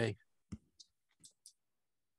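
The end of a man's spoken word over a video call, then four faint, short clicks in quick succession.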